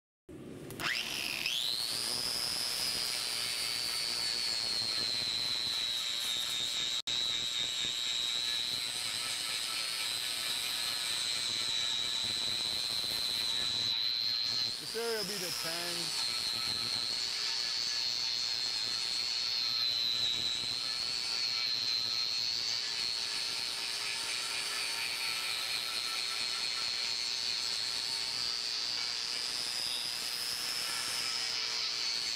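Electric angle grinder spinning up to a steady high whine and cutting into a steel billet, taking off a thin end that keeps breaking away. The whine dips briefly about halfway through, then bites in again.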